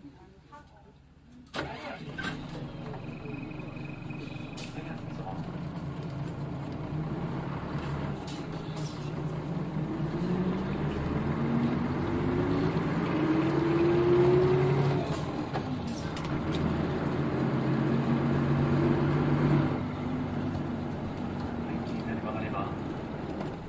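Nissan Diesel KL-UA452KAN city bus diesel engine, heard from on board. It comes in suddenly about a second and a half in, then the bus pulls away and accelerates, its pitch rising through two gears before easing off near the end.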